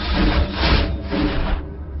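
A wooden planchette sliding and scraping across a Ouija board over a low rumbling drone. The scraping fades out about a second and a half in.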